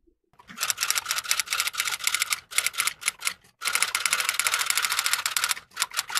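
Typing sound effect: rapid, even keystroke clicks, roughly ten a second, in two long runs with a brief break in the middle and a few more clicks near the end.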